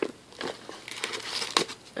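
Crinkling of small clear plastic bags of nail-art glitter and their cardstock holder being handled: a few short, separate crackles.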